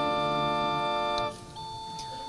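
Organ holding a sustained chord as accompaniment to a sung responsorial psalm. The chord breaks off about a second and a half in, and softer held notes follow.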